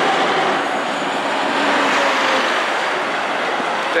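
Road traffic noise: a steady rush of passing vehicles and their tyres, with a faint whine here and there.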